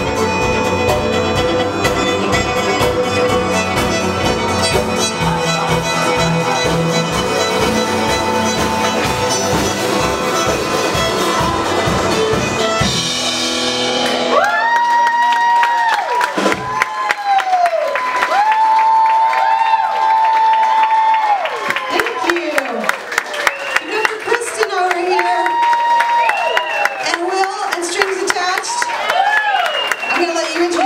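A live acoustic string band (acoustic guitar, violins, viola, cello and drums) plays the end of a song on a steady beat and holds a final chord about halfway through. The audience then cheers and whoops, with sustained shouts until the end.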